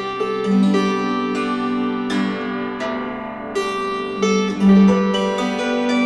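Instrumental music: a string instrument picks out a melody of ringing notes, each sharply attacked and left to fade.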